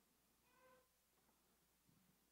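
Near silence: room tone, with a very faint brief tone about half a second in.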